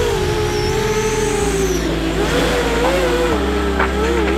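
ImmersionRC Vortex racing quadcopter's brushless motors and propellers whining in flight, the pitch wavering up and down with the throttle.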